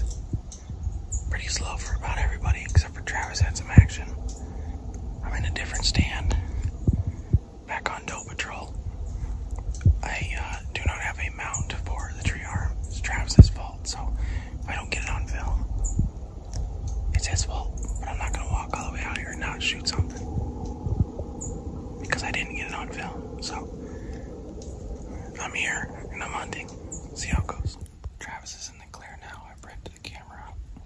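A man whispering in short phrases over a steady low rumble, with two sharp knocks, one about four seconds in and one near the middle.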